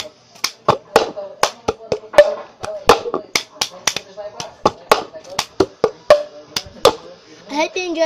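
Hand claps and a cup being tapped, slid and slapped on a hard surface in the cup-game rhythm: a quick, uneven run of sharp claps and knocks, about two or three a second.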